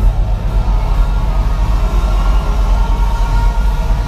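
Live rock band's amplified bass and electric guitars holding a loud, droning chord at the close of a song, with little drumming.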